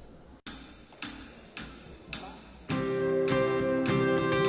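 A worship band starting a song: four evenly spaced count-in taps about half a second apart, then the band comes in on strummed acoustic guitar and held chords.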